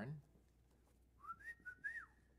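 A man whistling a short phrase of a few gliding notes, lasting about a second, starting a little past halfway through.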